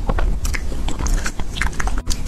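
Close-miked chewing of soft food with the mouth closed: wet smacks and small mouth clicks, irregular and several a second.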